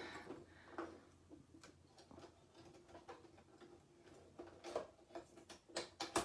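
Faint, irregular small clicks and taps of hands handling an embroidery machine while changing its thread spool and rethreading it, with a few sharper clicks near the end.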